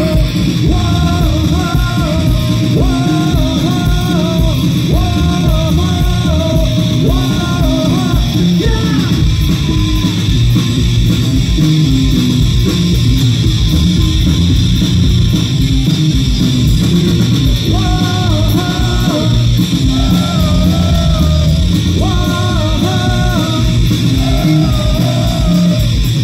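A punk rock band playing live and loud: electric guitar, bass guitar and drums in a steady, driving passage. A wavering melodic line rides over the top for the first third and again near the end.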